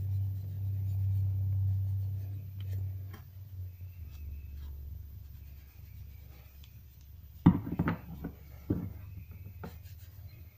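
A cotton pad rubbing over a fishing lure's fresh metal-leaf coating, wiping off the loose leaf. Two sharp knocks come about seven and a half and nearly nine seconds in.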